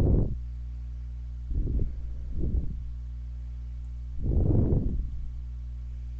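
Steady low hum of computer fans, with four short soft rushes of noise.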